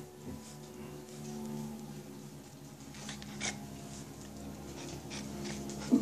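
A dog panting and breathing close to the microphone, with a few short breathy puffs, over a steady low hum.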